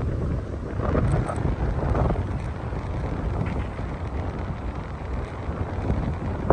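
Wind buffeting the microphone: a dense low rumble that swells and drops in gusts.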